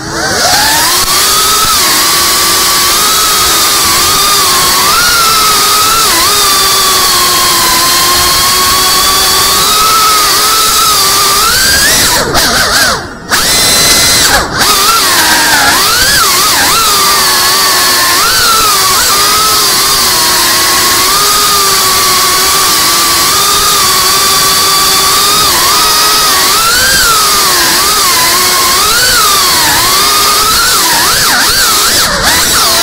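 FPV quadcopter's brushless motors whining. The sound spins up sharply at the start, then its pitch rises and falls constantly with the throttle. It cuts out briefly a few times a little under halfway through.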